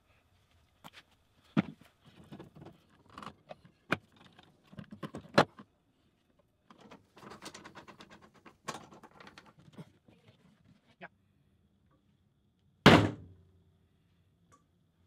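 Wooden boards and metal parallel clamps being handled and tightened during a glue-up: scattered knocks and clicks, a quick run of rattling clicks around the middle, and one loud clunk near the end.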